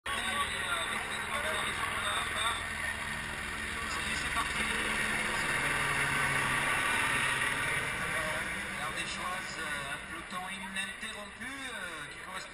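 A helicopter flying low overhead, growing louder to a peak about halfway through and then fading, over the chatter of a large crowd of cyclists.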